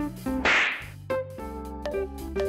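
A short swish sound effect about half a second in, marking a foul ball flying into the picture, over light jazzy guitar background music.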